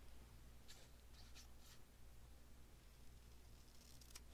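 Near silence with a low steady hum, broken by a few faint, short snips of small scissors cutting a scrap of paper in the first half.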